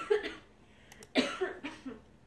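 A person coughing twice, a short cough at the start and a longer one just past the middle, with a computer mouse clicking just before the second cough.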